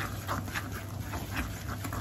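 Wire whisk stirring a thick crumbly batter in a glass bowl, with short scraping strokes about four a second over a low steady hum.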